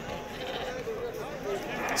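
A sheep bleating faintly among a tethered flock, with a crowd's voices in the background.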